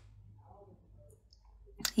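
A pause in speech: a steady low hum with a few faint small clicks, and a woman's voice starting up near the end.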